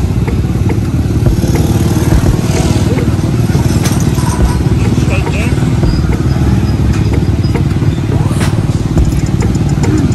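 Motorcycle engine idling, a steady low rumble with a fast even pulse.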